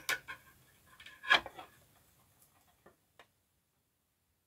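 A few small plastic clicks and a brief rustle as an action figure is fitted onto the clear plastic arm of a display stand, with two faint ticks near the end.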